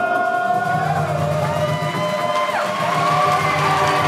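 A group of voices singing held notes over guitar accompaniment, with crowd noise and cheering mixed in at what sounds like the song's close.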